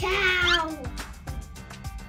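A single meow, falling in pitch over about the first second, over background music with a steady beat.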